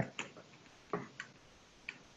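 Metal spacing quads and type clicking against each other in a metal composing stick as they are set by hand. About five small sharp clicks, the first the loudest.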